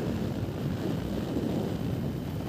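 Wind buffeting the microphone of a camera on a moving vehicle: a steady low rumble.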